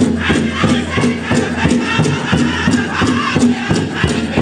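Powwow drum group singing together over the steady beat of a big drum, about three beats a second.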